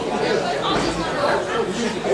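Several people talking at once, an indistinct babble of overlapping voices.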